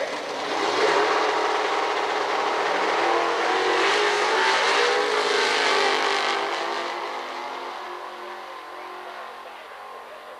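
Two Super Pro drag racing cars, a front-engine dragster and a door car, launch off the starting line at full throttle and race down the strip. Their engines rise in pitch as they leave about a second in, stay loud for several seconds, then fade steadily as the cars pull away down the track.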